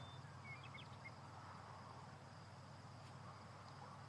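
Near silence: faint crickets trilling steadily, with a few tiny high chirps about half a second to a second in.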